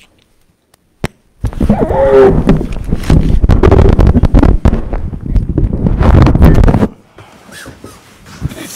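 Microphone handling noise: a sharp click about a second in, then about five and a half seconds of loud rubbing and rumbling as the podium gooseneck microphone is handled close up, stopping abruptly.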